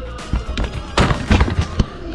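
A quick run of sharp knocks and thumps, densest in the second half, over background music.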